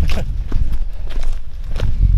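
Footsteps walking over grassy, rocky ground, a few uneven steps, over a steady low rumble on the microphone.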